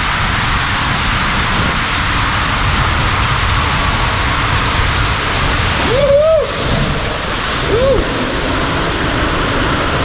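Water rushing down an enclosed water-slide flume under a rider's inflatable tube: a loud, steady rush. About six and eight seconds in come two brief rising-and-falling squeals.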